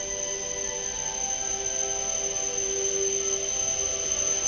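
Several steady ringing tones held together like a chord, with a faint hiss, on a Shinkansen platform as a train approaches.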